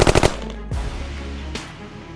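Logo-intro gunfire sound effect: a rapid burst of machine-gun fire that cuts off about a quarter second in, followed by a low rumble and a couple of heavy hits.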